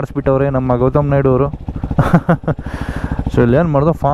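Royal Enfield Himalayan 450's Sherpa 450 single-cylinder engine running at low speed on a dirt track, its even pulses under a man talking. A brief rush of noise comes about two to three seconds in.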